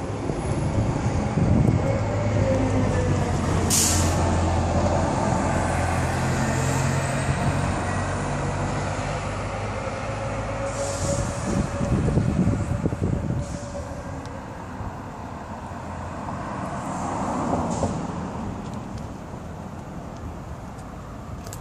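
Street traffic: a heavy vehicle's engine drone, with a short sharp hiss about four seconds in and a swell of noise around twelve seconds.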